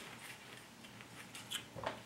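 Fabric shears cutting through fusible fleece interfacing: a series of faint snips, with a few louder ones near the end.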